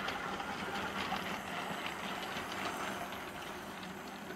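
Model train running steadily on the layout's track: the locomotive's small electric motor whirring, with the running noise of tinplate Hornby Dublo coaches on metal wheels.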